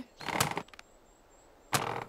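Cartoon sound effect of a character scrambling up into a tree's branches: two short noisy bursts, one near the start and one near the end.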